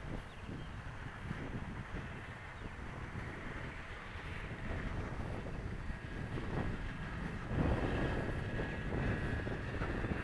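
Wind buffeting the microphone in gusts, strongest in the second half, over the faint steady high whine of an electric RC model airplane's motor flying overhead.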